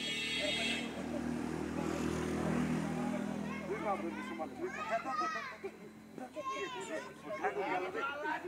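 Boys' voices calling and shouting during a kabaddi game: one voice is held low and steady for a couple of seconds, then high-pitched children's calls follow in the second half.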